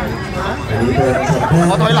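Several people talking over one another: the chatter of a small group.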